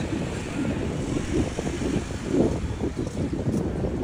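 Outdoor ambience picked up by a phone microphone: a steady low rumble with uneven surges, such as wind on the microphone and distant traffic make.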